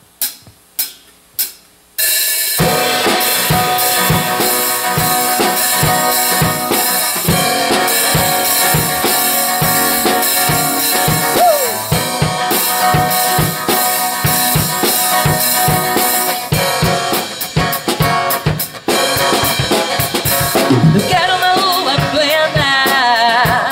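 Drumsticks clicked together to count in, three or four sharp ticks, then at about two seconds in a live band with drum kit starts a song's instrumental introduction with a steady beat of bass drum and snare.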